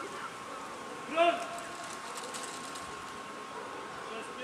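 A single short shouted call, a drill command, about a second in, over a faint steady high hum. No rifle shot is heard.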